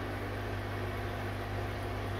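Steady electric hum of an aquarium air pump driving airlift filters, with a faint hiss of air bubbling through the water.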